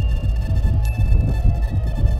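Strong, gusty wind buffeting the microphone as a heavy low rumble, with background music carrying a few long, held high notes, one coming in just under a second in.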